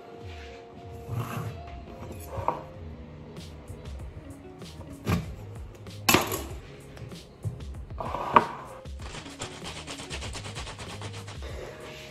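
Background music with three sharp knocks on a hard tabletop, about five, six and eight seconds in, as a knife cuts a lemon in half.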